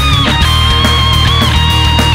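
Heavy rock band music without vocals: a lead line, likely electric guitar, holds high notes and slides down in pitch twice, once about a quarter-second in and again near the end. Drums and bass run steadily underneath.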